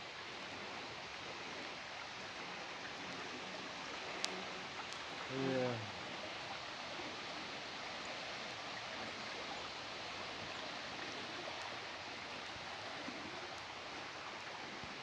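Steady rush of a shallow river flowing over a riffle and around fallen logs. A single sharp click sounds about four seconds in.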